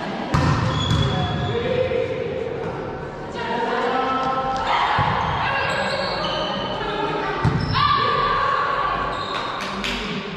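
Volleyball rally in an echoing sports hall: the ball struck by players' hands and forearms several times, sharp smacks about a second in, then around five and seven and a half seconds in, with players' voices calling out during play.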